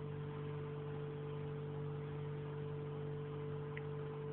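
A steady low electrical hum with an even background hiss, and one faint tick near the end.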